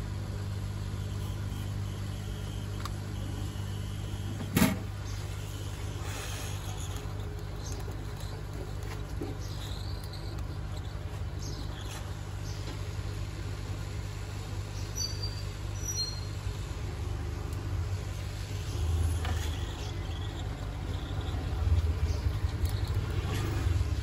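Hot-air rework gun blowing steadily with a low hum while heating ICs on a circuit board. A single sharp click comes about four and a half seconds in.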